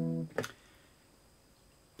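A note on a three-string cigar box guitar rings for a moment and is cut off, with a brief click as it stops. About half a second in, it goes to near silence: quiet room tone.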